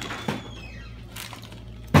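Small clicks and a brief rustle of plastic toy bricks being handled, then one sharp knock near the end.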